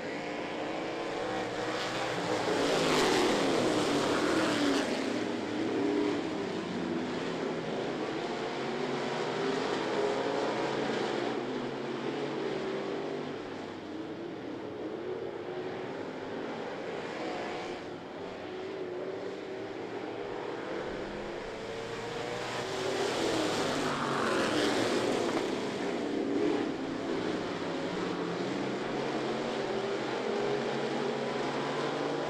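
Several dirt-track street stock cars running laps at moderate, even speed before the green flag. The engines swell louder as the cars pass close, about three seconds in and again near twenty-four seconds, then fade.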